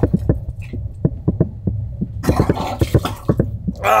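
A seasick man retching and vomiting: short, irregular gagging heaves, with a louder, harsher heave about two seconds in, over a steady low hum.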